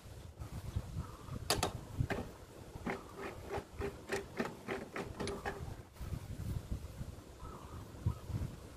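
Metal wood-lathe chuck being opened and closed with its T-handle chuck key, the lathe stopped: a run of short metallic clicks, roughly three a second, over a low rumble.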